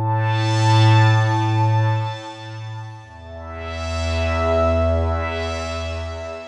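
Synthesizer pad made from a looped single-cycle synth waveform sampled into Kontakt, run through a low-pass filter with an LFO on its cutoff plus added effects. It plays two long held notes, the second lower one starting about three seconds in, and the tone swells brighter and then duller on each.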